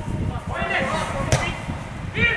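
Footballers shouting to each other across the pitch, with one sharp kick of the ball a little past halfway.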